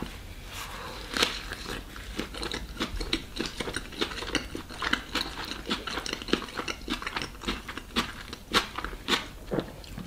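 Close-miked eating: a bite into a pork shashlik wrapped in flatbread, then steady chewing with many small wet mouth clicks and smacks.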